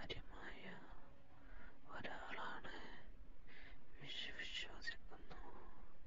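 A person whispering close up in short breathy phrases, with a few sharp clicks between them.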